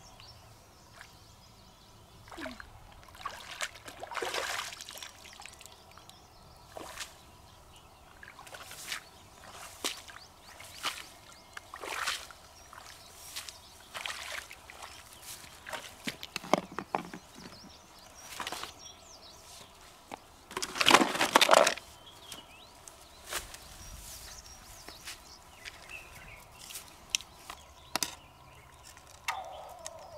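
Hands splashing and sloshing in shallow pond water, reaching into the bed to pick out freshwater mussels. The splashes are short and irregular, with a louder run of splashing about two-thirds of the way through.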